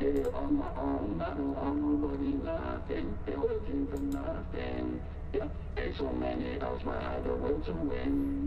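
Playback of a sung rap vocal run through the VocalSynth 2 plugin's 'On The Drive' vocoder preset. The voice sounds layered and synthetic, with short held chord-like notes and a steady low bass underneath.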